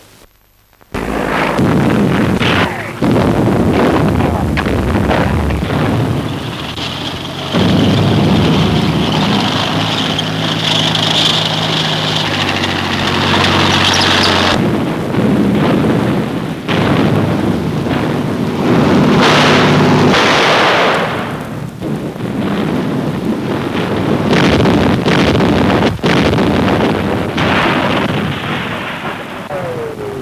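Battle sound effects on an old 1940s film soundtrack: a continuous din of explosions and sharp impacts, with a steady droning, pitched sound for several seconds in the middle.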